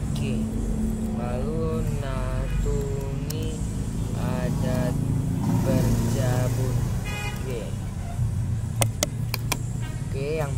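Indistinct voices talking in the background over a steady low rumble, with a few sharp clicks about nine seconds in.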